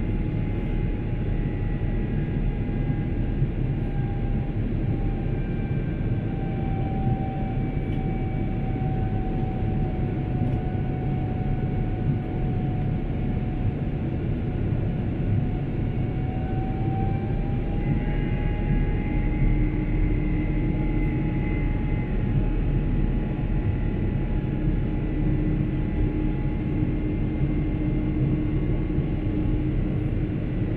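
Cabin noise inside an Airbus A350 climbing after takeoff: a steady roar of airflow and its Rolls-Royce Trent XWB engines. A thin engine whine sits over it, dipping slightly in pitch and rising again a little past the middle.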